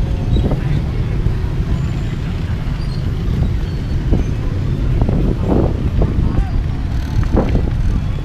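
Busy city street ambience: a steady low rumble of motorbike and car traffic, with passers-by talking in snatches about five seconds in and again near the end.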